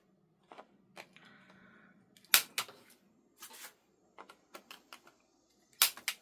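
Handheld corner-rounder punch cutting the corners of a card postcard: several sharp snaps, the loudest near the end, with lighter clicks and rustling of the card between them.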